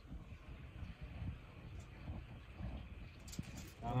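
Faint rustle of aluminium foil as a fish fillet is laid on it, with a couple of short crinkles near the end, over low background noise.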